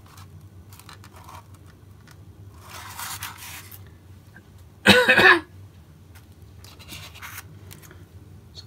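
Quiet handling noises at a workbench: a short soft scrape about three seconds in, and a brief louder rasp about five seconds in.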